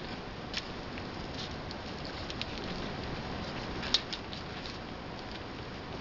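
Light scratching and soft clicks of hands rolling sliced deli meat and cheese on a paper plate, over a steady background hiss; a sharp click about four seconds in is the loudest.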